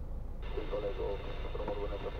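Steady low rumble inside a car's cabin as it sits idling in traffic, with muffled talk from the car radio starting about half a second in.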